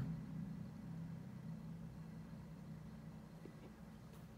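Quiet room tone: a faint, steady low hum, with a couple of soft clicks near the end.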